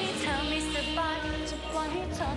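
A young woman singing a Thai pop song into a handheld microphone over backing music, her melody sliding between notes.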